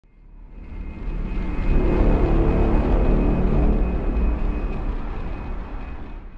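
Logo intro sting: a deep, rumbling cinematic swell with a faint high steady tone over it. It builds from silence over about two seconds, holds, then fades out near the end.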